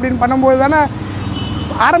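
A man talking with the low, steady rumble of street traffic underneath, heard most plainly in a pause of about a second in the middle. A brief faint high tone sounds just past the middle.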